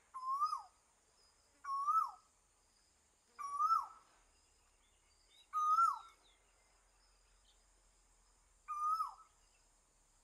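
A bird calling repeatedly, five short notes that each rise and then drop sharply, spaced one to three seconds apart, over a faint steady high-pitched hiss.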